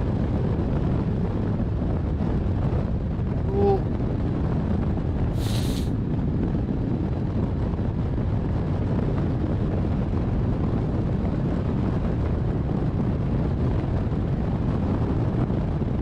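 Steady rush of airflow buffeting a camera microphone mounted on a hang glider in flight.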